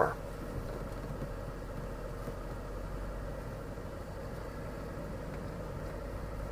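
Lexus LS460's V8 engine idling, heard from inside the cabin as a steady low hum, while the car creeps backward in reverse on light brake.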